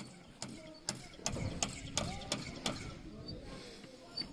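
A series of sharp, irregular clicks or knocks, about eight over two seconds, over low background noise.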